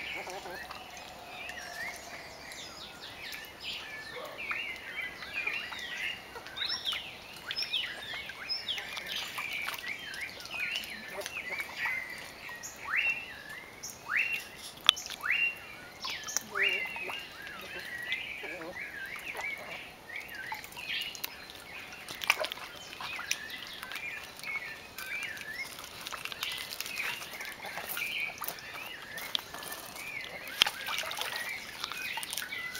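Many short, high-pitched animal chirps and downward-gliding whistling calls. A few sharp knocks stand out, the loudest about fifteen seconds in.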